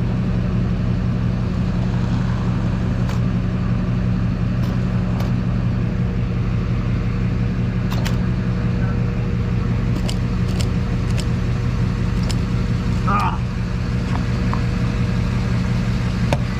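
Diesel fuel running from a pump nozzle into a truck's tank on the nozzle's lowest flow setting, over a steady low hum, with a few light clicks.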